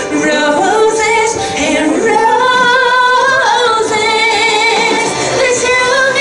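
A woman singing a melody into a microphone, holding long notes that waver with vibrato and gliding between pitches.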